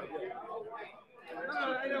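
Men talking: several voices in loose conversation, with a brief lull about a second in.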